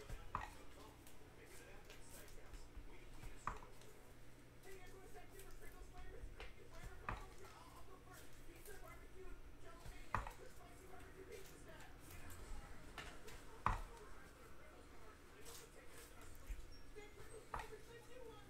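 Stiff, glossy Bowman baseball cards being flipped through by hand. There is a sharp card snap about every three and a half seconds, six in all, as each card is moved through the stack.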